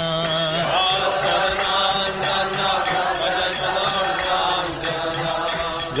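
Hindu devotional kirtan music between sung lines: a sustained melody runs under hand cymbals striking in a steady rhythm.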